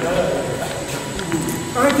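Indistinct talking voices.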